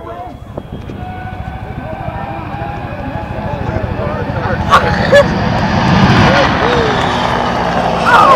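Helicopter rotor chopping in a fast low beat with a faint turbine whine, growing louder over the first six seconds or so. Two sharp pops come about five seconds in.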